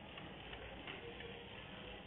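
Low, steady background hiss with a few faint ticks.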